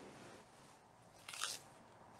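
A hairbrush pulled through long hair: one short brushing stroke near the end, with faint rustling before it.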